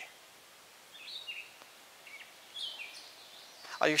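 Two short, quiet bird calls, high chirping phrases, one about a second in and another shortly before the three-second mark, over a low background hush.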